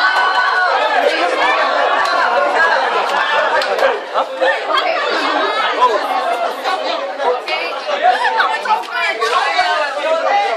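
A crowd's chatter in a room: many voices talking over one another at once, with no one voice standing out.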